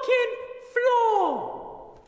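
A man's long, high-pitched wordless yell, breaking and catching again, that near the middle slides steeply down into a low groan and fades out.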